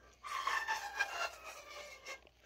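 Homemade pan flute of three-quarter-inch PVC pipe, open at both ends, being blown: a few airy notes heavily mixed with breath noise, starting a moment in and fading toward the end.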